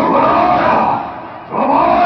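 An actor's loud, drawn-out declaiming shouts in the bhaona stage style: one long call over the first second, then another starting near the end.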